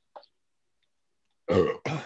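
A person clears their throat, two quick loud rasps about a second and a half in; before that it is near silence apart from a faint click.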